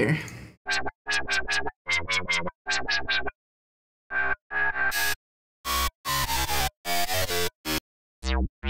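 Resampled dubstep-style synth bass played back in short chopped snippets, each cutting off abruptly into dead silence, while it is auditioned for a one-shot cut to load into a sampler. Some notes glide downward in pitch.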